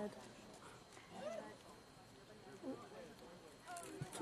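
Faint chatter of spectators, a few voices talking quietly at a distance with short gaps between them.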